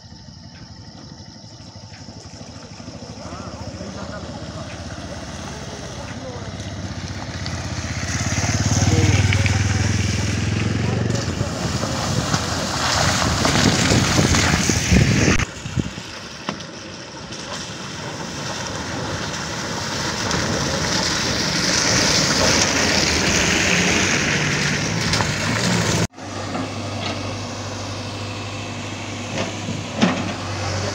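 A motorcycle approaches along a rough, water-filled dirt road, growing louder to a peak about nine seconds in. After a sudden cut, an SUV drives through the same stretch, loudest a little past twenty seconds.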